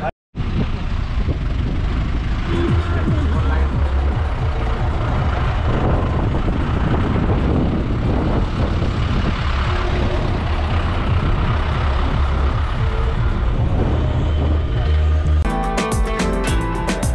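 Steady low engine and road rumble of a moving vehicle, heard from on board. Music with a guitar comes in near the end.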